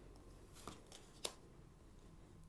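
Faint handling of a deck of oracle cards as one card is drawn out, with two soft card clicks, the sharper one a little past a second in.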